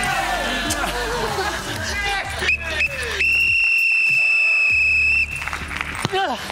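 A loud, steady, high-pitched timer buzzer sounds for about two seconds, starting about three seconds in, and then cuts off sharply. This is the end-of-time signal as the challenge clock reaches zero. Before it there are voices and music.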